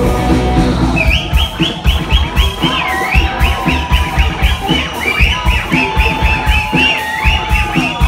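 Live rock band with button accordion, electric bass and drums playing loudly: a steady kick-drum beat under sustained chords, then a fast, high repeating melodic figure that comes in about a second in.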